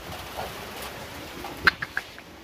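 Steady rain and gusting wind after a hailstorm has passed, heard as an even rushing noise. Near the end come three short, high squeaks in quick succession, the first the loudest.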